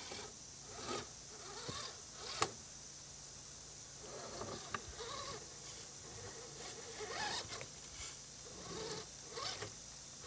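Redcat Gen8 RC scale rock crawler's electric drivetrain whirring in short, faint bursts as it inches over rocks, with its tyres scraping and rubbing on stone and a sharp click about two and a half seconds in.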